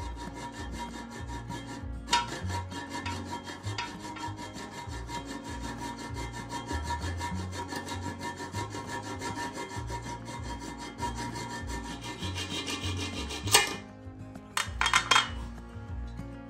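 Hacksaw cutting through the metal closet bolt at the base of a newly set toilet: a fast, even run of rasping strokes with a faint metallic ring, stopping with a sharp clack about three-quarters of the way in, then a few knocks.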